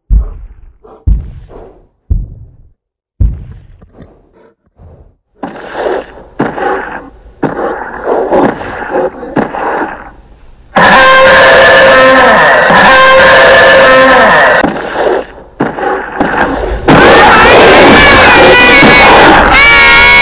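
Dinosaur sound effects: heavy footstep thuds about once a second, then, about eleven seconds in, loud sustained roaring that runs on with short breaks.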